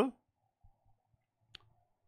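A single short, faint click about one and a half seconds in, against near silence.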